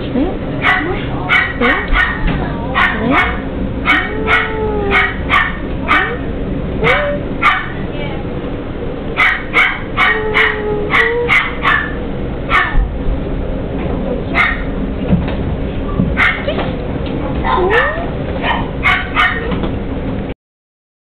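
Puppies yapping in runs of quick, short barks with pauses between, and thin rising and falling whines in the gaps.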